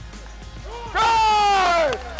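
A man's long, drawn-out shout of encouragement about a second in, slowly falling in pitch, over faint background music.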